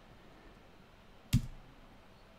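A single sharp keystroke on a computer keyboard about a second in, the Enter key pressed to run an apt install command, in an otherwise quiet room.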